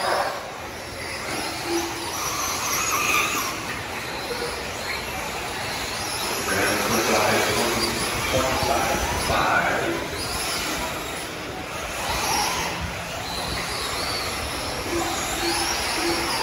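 Several 1/8-scale electric RC truggies racing, their motors whining and rising and falling in pitch as they speed up and slow down.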